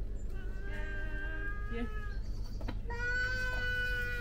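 Two long, steady bleats from a sheep or goat-type farm animal: the first starts about half a second in and lasts over a second and a half, and the second follows about a second later.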